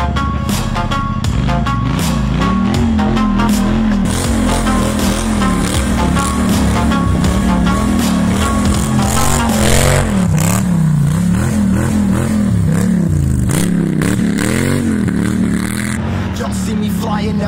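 A quad bike's engine revving up and down again and again as the ATV is drifted, mixed with a loud backing music track with a steady beat.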